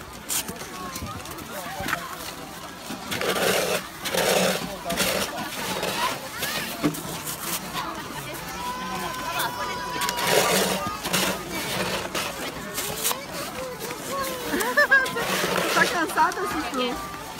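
Children's and adults' voices chattering in the background, with short crunches and scrapes of snow being scooped by a plastic snowball maker.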